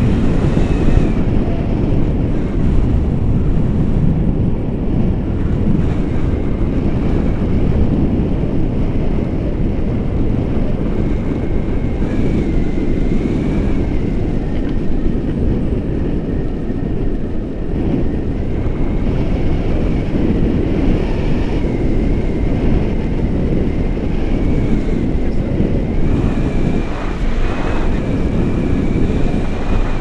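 Airflow buffeting the camera microphone in flight on a paraglider: a loud, steady low rumble of wind noise, with a faint wavering high whistle that comes and goes.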